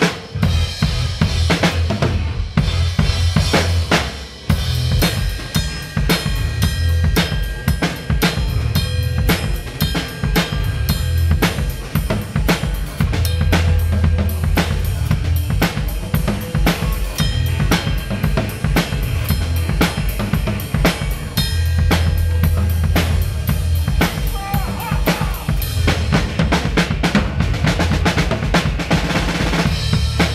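Drum kit played live in a funk groove: snare, bass drum and cymbals heard close up, over low sustained notes from the band. There is a busier run of quick strokes near the end.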